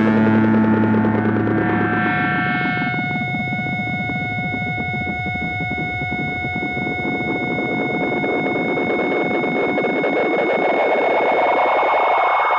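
End of a punk rock track: a ringing electric guitar chord dies away over the first few seconds. Then steady high-pitched amplifier feedback tones hold over a hiss of amp noise, and the noise swells louder toward the end.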